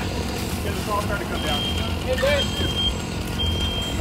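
Fireground noise: a steady low engine rumble under a high electronic beep, each about half a second long, repeating roughly once a second, with scattered voices.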